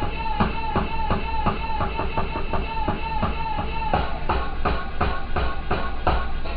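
A hip-hop beat playing from a pad sampler: a steady drum pattern under one short melodic sample chopped and retriggered several times a second, which drops out about four seconds in while the drums carry on.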